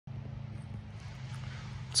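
A steady low engine hum with faint background noise.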